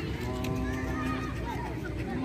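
A person's voice calling out in one long held tone for about a second near the start, with other voices around it.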